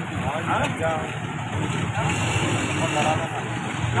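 Street traffic rumbling steadily, with indistinct voices of several people talking close by.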